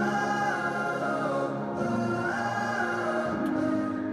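A pop song playing, with several voices singing long held notes that slide up and down in pitch over the backing music.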